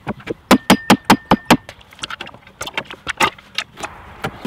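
Wooden pallets knocking and clattering as a pallet side of a compost box is lifted off and moved, a quick run of sharp knocks in the first half and scattered clatters later.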